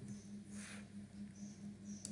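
Faint room tone with a steady low electrical hum, and one soft, brief rustle about half a second in.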